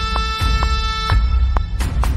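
Work-in-progress EDM track playing: a heavy, booming drum line under a held brassy horn-like note that sounds almost like an air horn and cuts off about a second in, with drum hits coming every quarter second or so.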